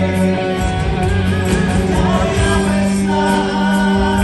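A live band playing a rock song: electric guitars, bass and percussion, with singing.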